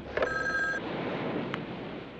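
A black rotary desk telephone's bell ringing once, a short ring of about half a second shortly after the start, followed about a second later by a single sharp click.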